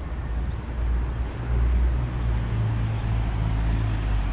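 Street traffic: a motor vehicle's low engine hum over general road noise, growing louder from about a second and a half in as a vehicle passes close by.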